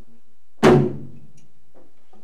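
A single loud beat on Coast Salish hand drums about half a second in, its low tone ringing out for about a second.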